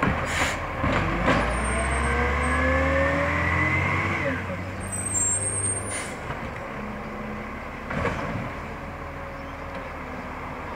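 Side-loader garbage truck's diesel engine pulling away, its pitch rising for about three seconds and dropping at a gear change about four seconds in, then fading as it moves off. A knock comes just after the start, and a brief high squeal about five seconds in.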